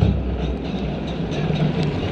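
Open-air stadium ambience during a lull in play: a steady low rumble with faint distant crowd noise.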